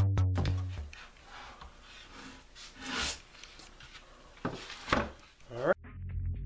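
Hands twisting and pulling picture-hanging wire on the back of a plywood board: soft rubbing and scraping of wire and wood, with a few sharper, louder scrapes near the end. Electronic music with a beat plays for about the first second.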